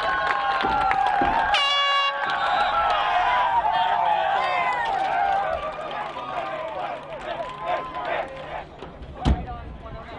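Several voices shouting and calling over each other outdoors at a lacrosse game, loudest in the first half and fading after about six seconds. A single sharp thump near the end.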